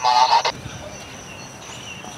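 A voice speaking, ending about half a second in, followed by a quiet background with a faint steady high-pitched tone.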